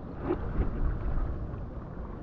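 Sea water sloshing at the surface with wind buffeting the microphone, a rushing noise that swells in the first second and then eases.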